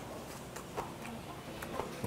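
A man chewing a mouthful of mustard-leaf kimchi, with a few faint, short wet clicks from the mouth.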